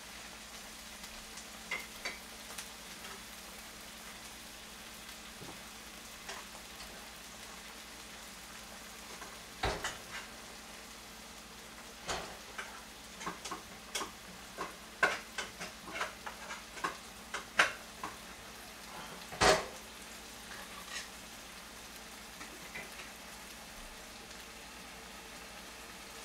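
Kimchi frying with onion and carrot in a pan, a steady low sizzle. From about ten seconds in come scattered short clicks and knocks of kitchenware being handled, the loudest a sharp knock about three-quarters of the way through.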